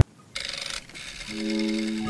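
A short rasping scrape a third of a second in, fading by about a second: a plastic knife cutting through a block of cheese. Background music with steady guitar notes comes in a little past halfway.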